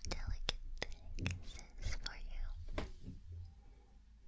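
A woman whispering close to the microphone, with sharp clicks scattered throughout and a few soft low bumps of her hands touching the microphone.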